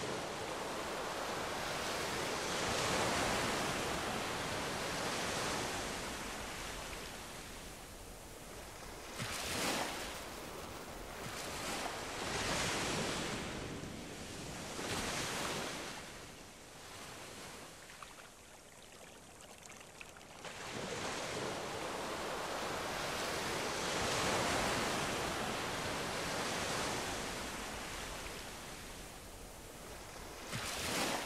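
Ocean surf washing onto a beach, rising and falling in swells every few seconds, with a quieter lull a little past the middle.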